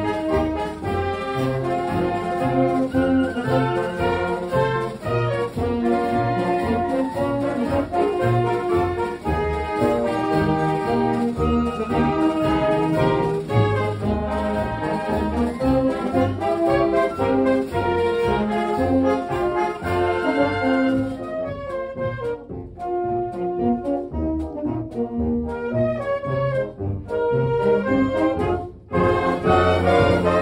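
A school wind band playing a march, brass to the fore over a steady low beat. About two-thirds of the way in the high instruments drop out for a lighter passage, with a brief break near the end before the full band comes back in.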